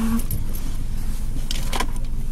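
Steady low rumble of a car heard from inside its cabin, with a short clatter about one and a half seconds in.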